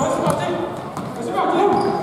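Men's voices calling out in a large gymnasium, with a few thuds of a soccer ball on the hardwood floor as it is dribbled.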